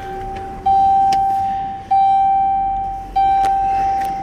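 Dodge Grand Caravan's dashboard warning chime: a soft tone, then three louder chime strikes about a second and a quarter apart, each fading away. It is the door-ajar warning, sounding because the driver's door is open.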